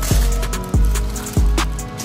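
Background music with a steady beat: deep bass drum hits that drop in pitch, over sharp hi-hat ticks.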